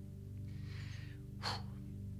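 Soft background music holding a steady sustained chord. Over it, a person draws a breath close to a microphone about half a second in, then makes a short breathy sound around a second and a half in.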